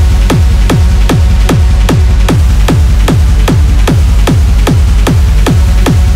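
Hard techno track with a fast, steady four-on-the-floor kick drum, each kick dropping in pitch into a deep bass thud, over a dense electronic layer.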